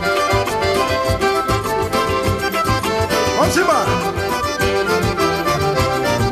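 Instrumental forró passage: an accordion plays the melody in held, stacked notes over a steady, regular drum and percussion beat. A brief gliding, voice-like cry rises and falls about halfway through.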